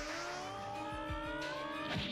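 Anime sound effect of a rising whine over the background score: several tones climb slowly in pitch together above a steady held note, then fade near the end.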